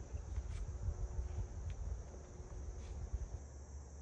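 Quiet outdoor background: a faint, steady high chirring of insects over a low rumble, with a few faint light knocks of buns and hands on a wooden cutting board.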